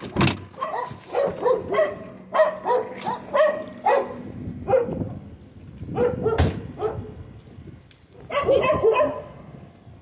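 A dog barking repeatedly in short bursts, with a few knocks from the Beetle's car door as someone gets out, the loudest about six and a half seconds in.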